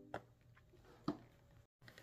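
Near silence, with two faint short clicks about a second apart.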